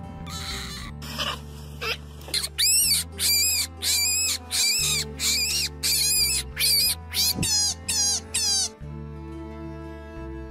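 A rapid run of about a dozen short, high-pitched squealing calls from a small animal, roughly two a second, each arching in pitch. They play over soft background music and stop near the end.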